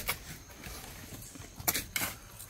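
Hoes chopping and scraping into loose soil: one stroke at the start and two more close together near the end.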